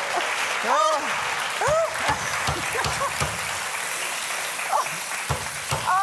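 Studio audience applauding, with laughing voices and short exclamations over it.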